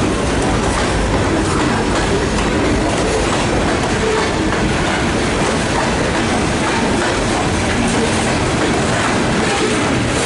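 Freight train of covered hopper cars rolling past, a loud, steady noise of steel wheels running on the rails.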